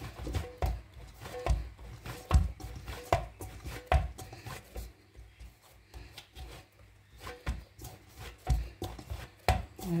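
Soft flour dough kneaded by hand in a stainless steel bowl: irregular dull thumps as the dough is pressed and pushed against the bowl, with softer rubbing between. The thumps ease off for a couple of seconds in the middle, then pick up again.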